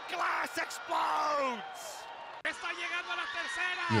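Wrestling broadcast audio: voices call out in long exclamations whose pitch falls, and the sound changes abruptly about two and a half seconds in as it cuts to another clip.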